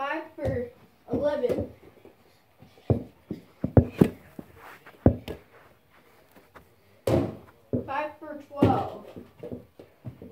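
A child's voice, words unclear, comes briefly near the start and again near the end. In the middle is a run of sharp knocks and thuds from a small basketball striking a toy hoop and the floor, with a louder knock a couple of seconds later.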